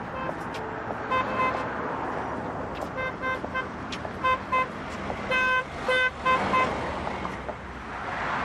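A car horn sounding in short, repeated beeps, in several groups, over steady traffic noise.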